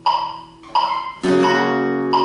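Flamenco guitar: a chord dies away, then a full strummed chord about a second in rings on. Under it a metronome clicks steadily at 87 bpm, about once every 0.7 s.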